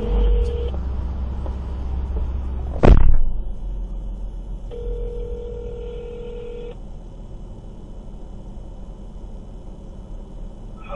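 Telephone ring tone of a call waiting to be answered: a steady tone that stops just under a second in, then sounds again for about two seconds from about five seconds in. A loud thump about three seconds in, over a low rumble.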